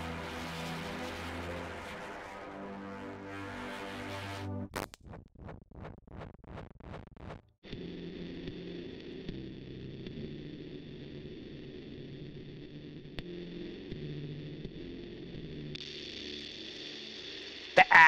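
A saw-wave synthesizer played through iZotope Trash 2 distortion presets. First a held, distorted chord; then a pulsing pattern of about three beats a second that cuts off; then a new steady distorted tone with a high whine above it.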